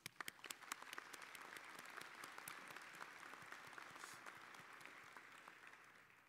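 Applause from a small crowd: a few separate claps at first, thickening into steady clapping, then fading out near the end.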